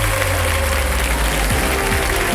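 Studio audience applauding over background music, with a steady low music note through the first second and a half.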